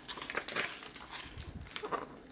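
A page of a picture book being turned by hand: a quick run of paper rustles and crackles.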